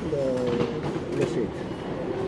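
Short spoken fragments over the steady background noise of a railway station.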